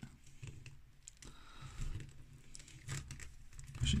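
Faint handling noise of a Funko Savage World Mumm-Ra action figure and its plastic sword: a few soft clicks and light rustling as the stiff plastic fingers are worked to take the sword.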